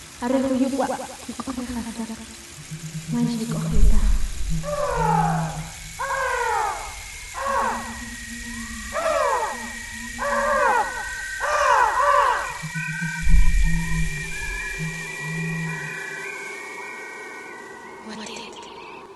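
A woman's voice speaking over film score music with low sustained notes. The music thins to held high tones and fades near the end.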